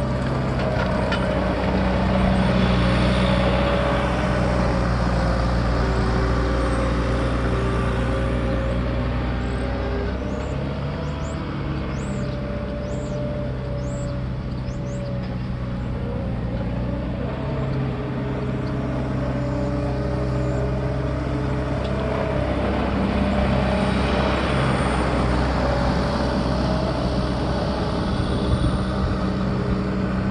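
A New Holland skid-steer loader's diesel engine runs steadily as the machine maneuvers close by. Its engine note drops lower about ten seconds in and picks up again past the twenty-second mark.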